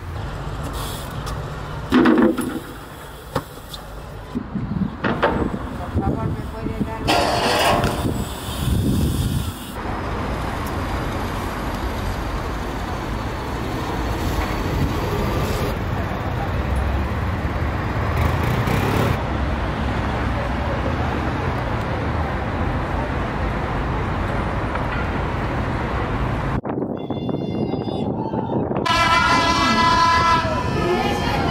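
City street sound: traffic running steadily, with a short car horn about two seconds in. Near the end, louder voices come in.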